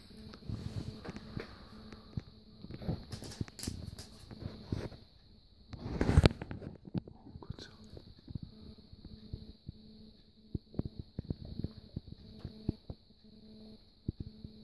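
Quiet whispering with scattered soft clicks and rustles, and one louder breathy burst about six seconds in, over a faint steady hum and high whine.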